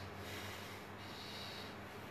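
A man's faint breath drawn in through the nose, a single demonstration of breathing in all at once, over a steady low hum.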